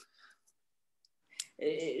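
A short pause of near silence with a few faint ticks, then one small sharp click about a second and a quarter in. A woman starts speaking just before the end.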